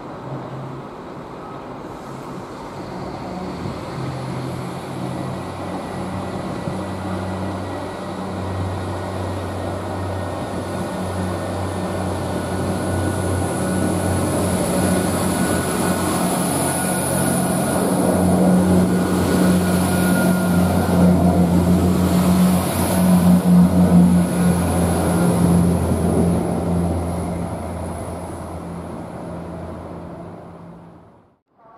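Irish Rail 22000 Class InterCity diesel railcar approaching and passing along the platform, its underfloor diesel engines giving a low steady hum with a high whine over wheel and rail noise. It grows louder, is loudest as the carriages go by in the second half, then fades away near the end.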